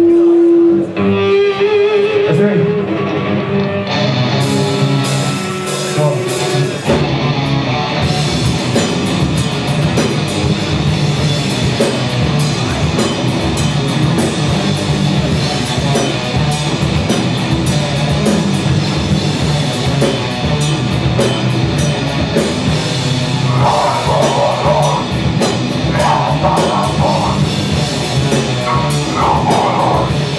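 Live heavy metal band starting a song. An electric guitar opens alone with a held note and then a wavering line. Cymbals come in about four seconds in, and the full band with drums and bass guitar crashes in at about seven seconds, playing loud distorted rock from then on.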